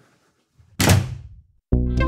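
A single loud thud about a second in, dying away quickly. Keyboard music with a held chord starts near the end.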